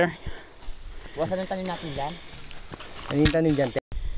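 People's voices talking in two short stretches, over a faint steady hiss. The sound drops out for a moment just before the end.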